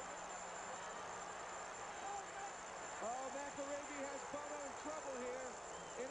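Arena crowd noise, with a voice shouting over it from about halfway through. A thin, steady high-pitched whine runs under it all.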